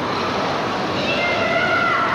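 Children's high-pitched, drawn-out voices over a steady background hubbub, the held notes coming in during the second half.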